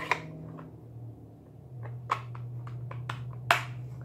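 A few short, sharp clicks and taps from a plastic ink pad case being handled and shut, the loudest near the end, over a low steady hum.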